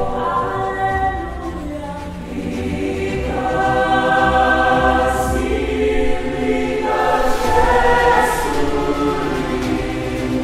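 A choir singing in harmony, holding long sustained chords that change a few times.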